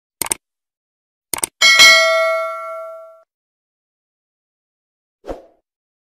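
Subscribe-button sound effect: a quick double mouse click, another double click about a second later, then a bell ding that rings out and fades over about a second and a half. A soft thump follows near the end.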